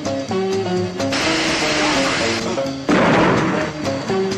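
Orchestral film score playing a melody of short stepped notes. About a second in, a hissing rush lasts just over a second. Near the end it is cut through by a louder, sudden noise burst lasting about a second.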